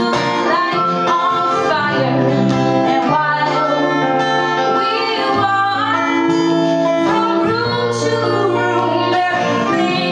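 Live acoustic song: a steel-string acoustic guitar strummed steadily under long held melodica notes, with a woman singing.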